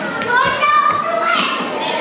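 Children's high-pitched voices talking and calling out in a large hall.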